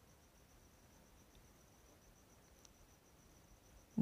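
Near silence: faint room tone with a faint, high-pitched, rapidly pulsing tone throughout.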